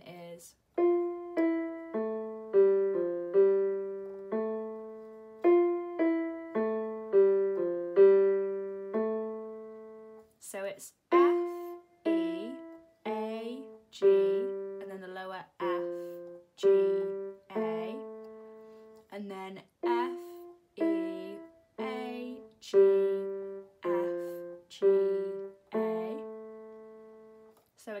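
Casio Casiotone keyboard on its stereo grand piano voice, played slowly one note at a time by the right hand: the melody line F E A G F G A, then F E A G F G A again. Each note starts sharply and fades.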